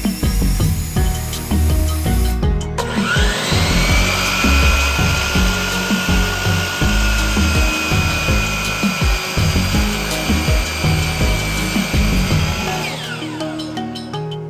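DeWalt sliding miter saw starting up with a rising whine about three seconds in, running and cutting a red oak board for about ten seconds, then winding down near the end. Background music with a steady beat plays throughout.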